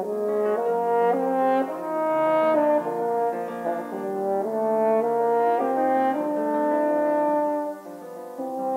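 French horn playing a melody, stepping from note to note about every half second, with a short break in the line just before the end.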